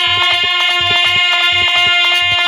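Instrumental passage of Bhojpuri birha folk music: a harmonium holds steady reedy notes while a dholak keeps a quick, even beat.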